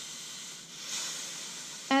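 Soft, steady hiss of steam rising from a wet washcloth clamped under a hot flat iron, swelling slightly about a second in. The steam is what melds the wrapped synthetic hair together into a sealed dread.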